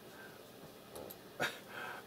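A single sharp click of a computer mouse about one and a half seconds in, over quiet room sound, with a faint high whine-like sound near the end.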